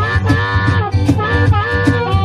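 Live acoustic blues. A harmonica plays two long held chords with short bends between them, over acoustic guitar and a steady cajón beat.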